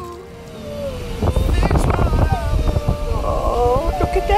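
Background music fades down, and about a second in a loud, unsteady low rumble comes in with a voice rising and falling over it.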